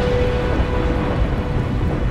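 A deep, continuous thunder-like rumble in a dramatic soundtrack, with a single held note fading out in the first half-second.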